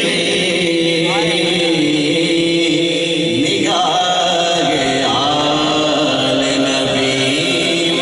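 A man chanting a naat, a devotional poem in praise of the Prophet, into a microphone in long held notes that bend between pitches, without instruments.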